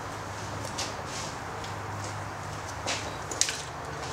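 Faint handling of a long socket extension at an engine: a few short clicks and rustles over a steady low hum.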